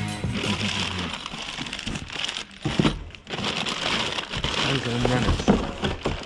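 Background rock music fades out in the first second. Then clear plastic wrapping crinkles and cardboard rustles as a bagged engine part is lifted out of its box, with a few light knocks.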